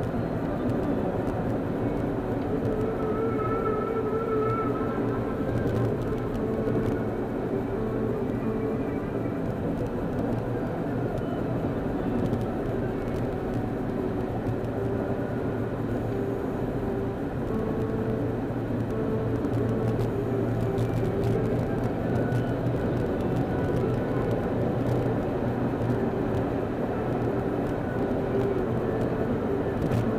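Steady road and engine noise inside a car cruising at freeway speed, a constant low drone with no breaks.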